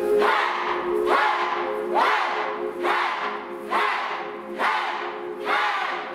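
A group of voices shouting together in a steady rhythm, about one shout a second, each shout rising in pitch. Under the shouts runs a held musical drone, which fades while they go on.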